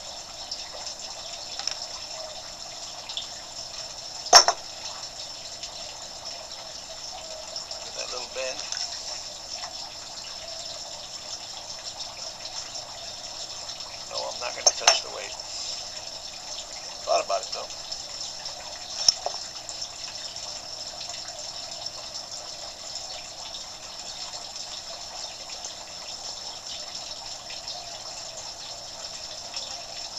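Steady running water from a backyard pond, with a few sharp knocks of handling over it, the loudest about four seconds in and a close pair a little after halfway.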